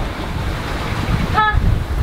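Wind buffeting the microphone over the steady rush of the sea around a sailing yacht under way, with a brief "ah" from a voice about one and a half seconds in.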